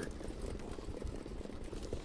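Steady low rumble and noise of the racetrack as a field of harness pacers and the mobile starting-gate truck pick up speed toward the start.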